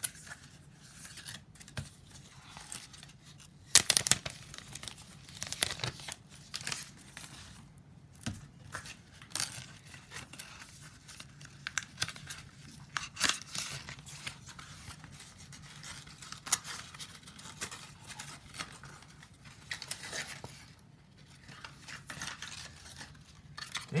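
Cardboard and paper packaging rustling, crinkling and tearing as a coiled braided cable is unwrapped from its paper sleeve, with scattered sharp clicks and one louder rip about four seconds in.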